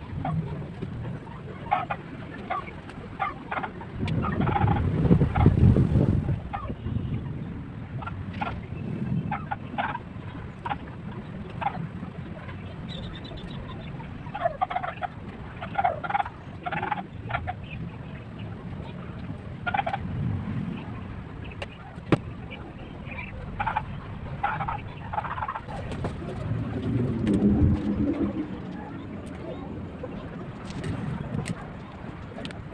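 Poultry calling repeatedly in the background in short calls. A low rumbling noise swells a few seconds in and again near the end.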